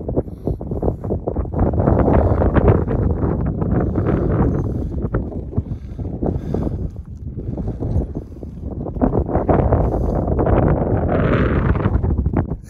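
Wind buffeting the microphone: a loud, low rumble that swells in two strong gusts.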